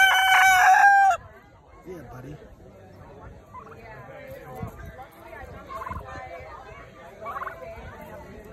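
Rooster crowing, the end of one loud held crow filling the first second and cutting off. After it, only a few soft short calls from the chickens and turkeys.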